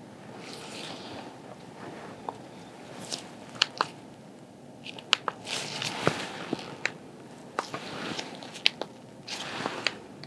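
Close-miked handling of small plastic medical devices, a fingertip pulse oximeter and an infrared forehead thermometer, by latex-gloved hands: soft rustling with a scattering of sharp clicks.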